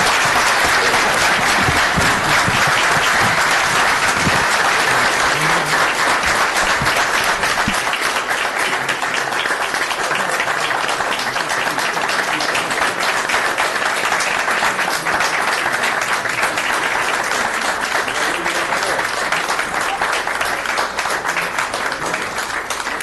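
Audience and council members applauding, a dense, sustained round of clapping that eases slightly about a third of the way through.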